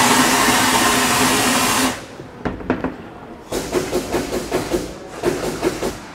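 Vapor honing gun blasting inside a wet-blast cabinet: a loud rushing hiss of compressed air and abrasive slurry for about two seconds that cuts off sharply, then a second, quieter and uneven stretch of spraying with a crackle in it. It is stripping old paint and corrosion from an aluminum engine case with 220 aluminum oxide abrasive at around 100 psi.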